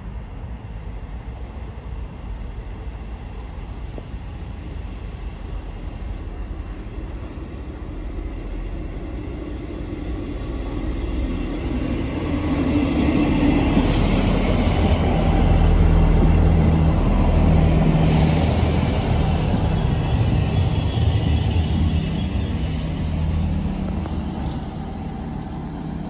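ScotRail Class 158 diesel multiple unit arriving at the platform: the underfloor diesel engines and rail noise grow from about ten seconds in and are loudest between about fourteen and twenty seconds, with three brief high bursts of hiss or squeal as it slows, then ease off as the train comes to a stand.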